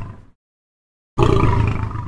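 Tiger roar heard twice. The tail of one roar fades out at the start, and a second, similar roar begins just over a second in and fades away.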